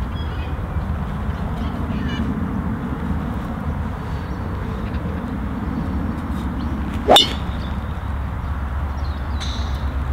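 A golf driver striking a teed-up ball: one sharp metallic crack about seven seconds in, over a steady low background rumble.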